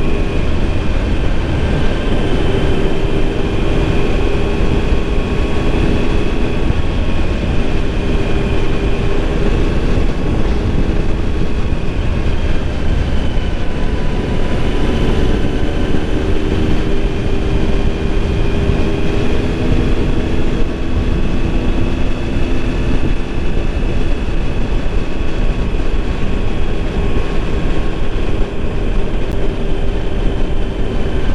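Motorcycle riding at steady road speed: dense wind rush on the microphone over the engine's even drone, with no clear revving or gear changes.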